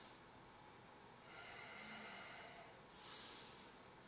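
A man breathing faintly and slowly, with a long breath about a second in and another near the end.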